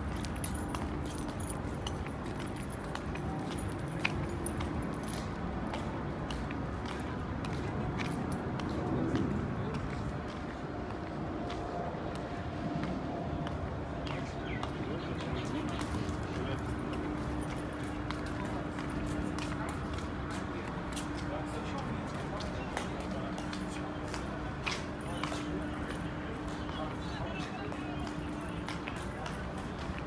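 Walking-pace street ambience: indistinct talking in the background with scattered footstep clicks, and a steady low hum through the second half.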